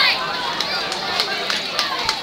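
Indistinct voices of spectators talking in the background, with a few faint clicks.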